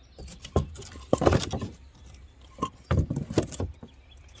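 A sheet of scrap plywood being handled and set in place against wooden 4x4 posts and concrete retaining-wall blocks. It gives short wooden knocks and scraping rustles, in two busier spells about a second in and about three seconds in.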